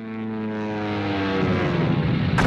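Propeller aircraft engine droning, its pitch sagging slightly as it grows louder, with a low rumble building up under it in the second half.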